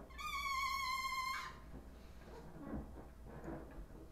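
A rubber balloon's stretched neck squealing as air escapes through it: one high, steady, slightly wavering squeal lasting a little over a second near the start.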